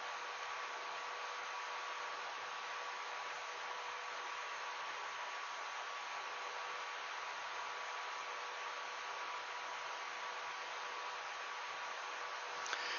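Steady background hiss with a faint, even hum underneath. It does not change and has no clicks or other events in it.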